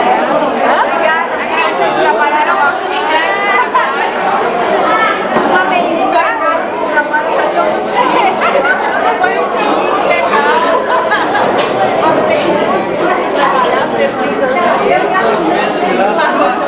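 Many people talking over one another: a steady, loud babble of overlapping voices in a large room.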